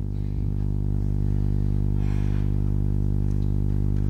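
A steady low electrical hum with a row of evenly spaced overtones, unchanging throughout. There is a faint brief rustle about two seconds in.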